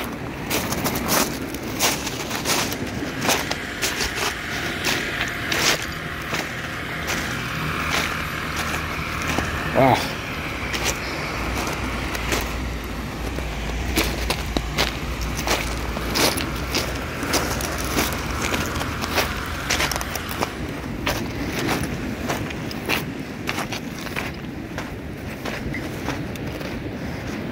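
Footsteps crunching on beach pebbles, an irregular run of sharp crunches about one or two a second. A low steady drone runs underneath from about six seconds in until about twenty seconds.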